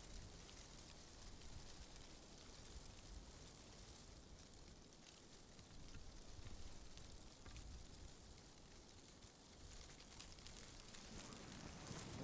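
Near silence: faint outdoor ambience, a soft even hiss over a low rumble.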